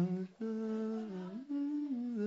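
A person humming a slow tune, holding each note and stepping between pitches, with a brief break about a third of a second in.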